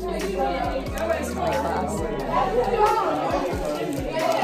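Chatter: several people talking at once in a large, echoing lecture room, no single voice clear.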